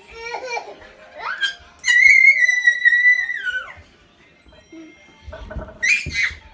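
A young child squealing in play: short giggles, then one long, high-pitched squeal held for about two seconds that drops at its end, the loudest sound here.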